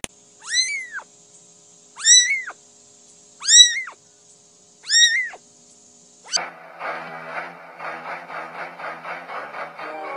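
A very young kitten meowing four times, each high thin call rising then falling in pitch, about a second and a half apart. Music with a steady beat comes in about six seconds in.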